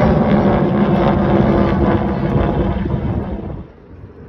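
A loud, steady engine drone with a low rumble, dropping away abruptly about three and a half seconds in.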